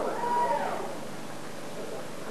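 A single high, wailing cry rises and falls once about half a second in as the band's music drops away, followed by quieter noise in the hall.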